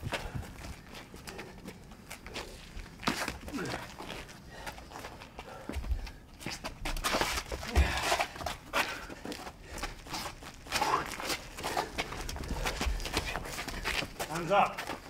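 Bare-knuckle boxing at close range: irregular sharp smacks and thuds of punches and blocks, mixed with feet scuffing on the ground.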